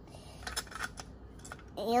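A small plastic toy figure handled and tapped on a tiled floor: a few light clicks and knocks spread over the moment.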